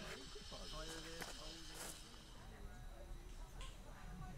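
Faint, indistinct chatter of people talking in the background, with a few light clicks. A steady high hiss fades out about halfway through.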